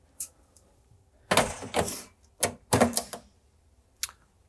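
Metal grease filters being fitted back into a cooker hood: a series of sharp clicks and clacks, several in quick succession between about one and three seconds in.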